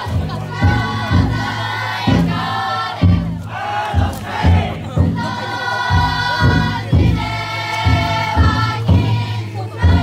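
A futon daiko float's drum beaten in a steady rhythm, a little under two strikes a second, under loud many-voiced chanting by the crowd of bearers carrying the float.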